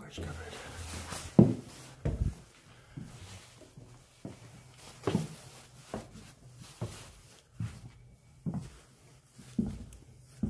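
Footsteps indoors, a short thud about once a second, with faint low voices underneath.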